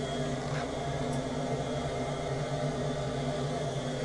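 Diesel-fired home heating boiler running after start-up, its burner giving a steady, even hum.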